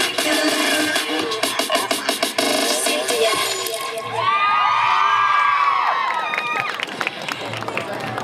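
Electronic dance music with a steady beat plays loudly and stops about halfway through. An audience of young people then cheers and screams, with many voices rising and falling together, and the cheering dies down near the end.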